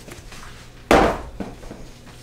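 A heavy knock on a stainless steel worktable about a second in, then a lighter knock about half a second later.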